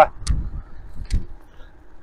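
Low rumble of wind and road noise while riding a bicycle along a tarmac lane, swelling twice, with two faint ticks about a second apart.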